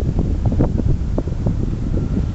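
Airflow buffeting the microphone in flight under a paraglider, a steady, loud low rumble of wind noise.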